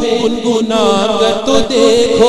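Devotional singing of an Urdu naat: a voice holding long notes that waver and bend in pitch.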